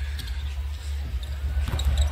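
A basketball dribbling on a hardwood court, a few bounces that come closer together near the end, over a steady low hum of arena sound.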